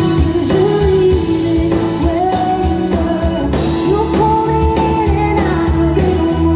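Live pop-rock band playing: a woman sings lead with long held notes over acoustic and electric guitars, keyboards and a drum kit.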